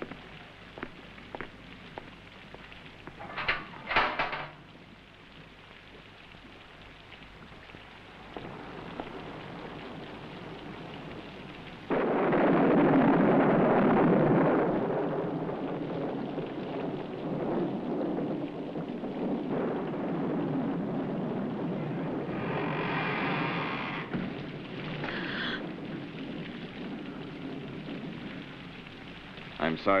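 A thunderclap: a sudden loud crack about twelve seconds in that rolls into a low rumble and dies away slowly over about ten seconds. Before it come a few faint ticks and a short sharp sound about four seconds in.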